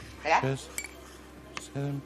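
A few light clinks of a metal teaspoon against a small glass dish while measured spoonfuls of baking soda are scooped out.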